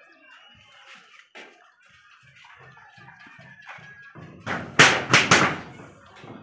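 A long stick knocking against corrugated metal roof sheets: three or four loud knocks in quick succession about a second before the end, after a quiet stretch.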